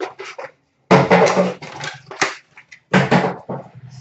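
Rustling and crinkling from hands handling packaging and cards: one burst about a second in, lasting about a second, and a shorter one about three seconds in.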